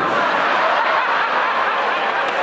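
Audience laughing, a steady wash of many voices.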